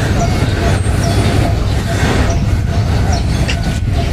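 A steady low rumble of outdoor noise with faint voices in the background.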